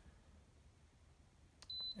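Near silence, then near the end a button click followed by one short, high beep from the Feniex 4200 Mini lighting controller as its pattern button is pressed to switch the LED strips to the faster flash pattern.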